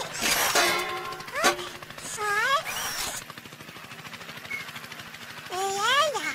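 Cartoon soundtrack with background music. A noisy clattering burst comes in the first second, followed by several short rising-and-falling squeals from the cartoon baby.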